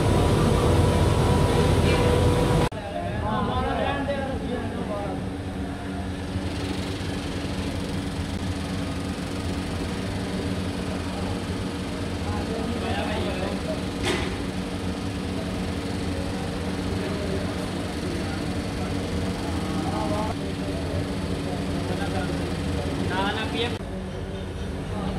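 Steady hum of foundry machinery holding several fixed tones, loud at first and dropping suddenly to a lower level about three seconds in, with workers' voices calling out now and then over it. A single sharp knock about 14 seconds in.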